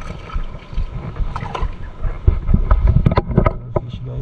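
Wind rumbling on the microphone over sloshing shallow water. From about a second in there is a run of sharp splashes and clicks, loudest near three seconds, as a hooked emperor fish is landed at the surface.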